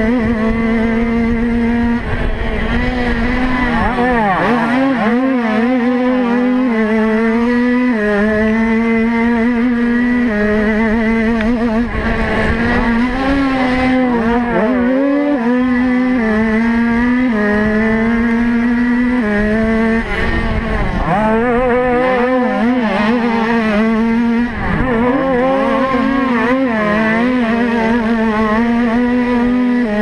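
Motocross bike engine running hard under race throttle from the camera bike. The engine note holds high and steps up and down, and several times drops sharply as the throttle is closed before picking back up.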